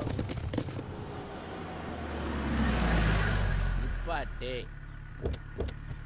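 A car drives up, its engine and tyre noise swelling to a peak about three seconds in and then dying away. A brief voice follows, then two short knocks near the end.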